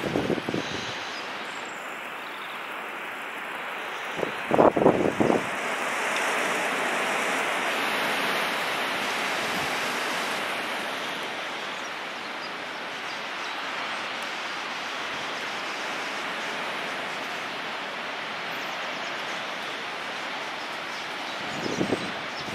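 Wind blowing steadily over the microphone, swelling a little in the middle, with short loud buffets of wind on the microphone near the start and about five seconds in.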